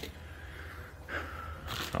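Quiet garage room tone: a steady low hum with faint rustling, and a short soft hiss just before speech resumes.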